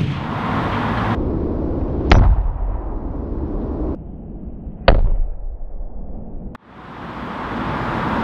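A rubber mallet striking a car's laminated windscreen twice, two sharp knocks about three seconds apart, the second a little louder. The blows leave the glass cracked with a circle of damage.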